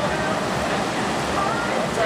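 Distant children's voices and chatter over a steady rushing noise.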